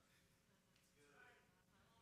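Near silence: room tone in a pause between spoken phrases.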